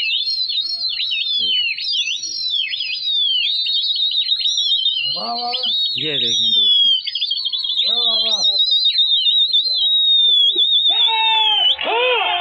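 Several people whistling loudly without a break, many overlapping high whistles sweeping up and down: pigeon fanciers whistling at their flock in flight. Short shouts break in a few times, and a longer call comes near the end.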